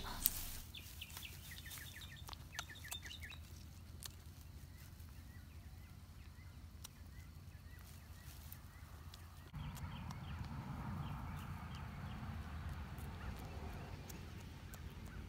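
A white Nubian kid goat quietly munching and tearing grass and weed stems, faint crisp clicks, with small birds chirping in quick runs. About nine and a half seconds in the outdoor background gets louder and the chirping carries on.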